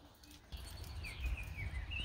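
A distant songbird singing a short whistled, warbling phrase that starts about half a second in, over a faint low rumble.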